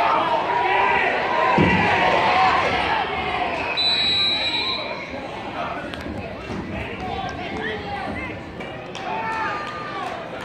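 Overlapping shouts and chatter of spectators and players at an outdoor youth football game. A thump sounds about one and a half seconds in, and a short high whistle-like tone is heard about four seconds in.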